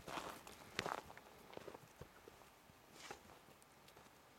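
Faint, uneven footsteps on dry grass and stubble, a soft brushing stroke every half second or so.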